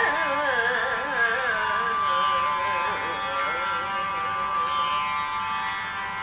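A woman's voice singing the song's closing phrase in raga Begada, the held notes wavering with Carnatic ornamentation over a steady drone. The voice weakens after about two seconds and fades out near the end while the drone carries on.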